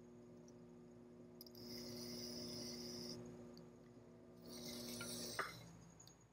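Faint scraping of a stick tool trimming excess clay from the base of a pot on a spinning potter's wheel, in two hissing stretches, over a steady low hum from the wheel. The hum cuts off with a click near the end.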